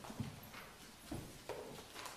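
Four faint, irregular knocks and bumps of things being handled: a book and papers at a lectern, and a man shifting at the pulpit.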